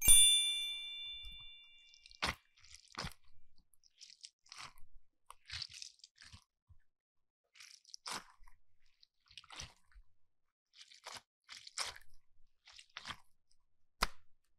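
A bright chime sound effect rings out at the start and fades over about two seconds. After it come scattered soft crackles and squishes as hands squeeze and pull a rubbery squishy toy and mesh stress balls.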